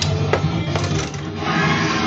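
Spider-Man pinball machine's game music playing, with about four sharp mechanical clicks from the playfield in the first second.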